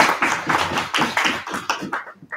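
An audience applauding, the clapping thinning out and dying away near the end.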